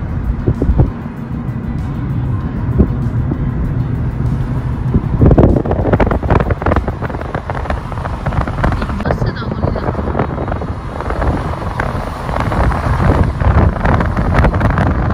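Moving car's road noise with wind buffeting the microphone in irregular gusts through a partly open side window.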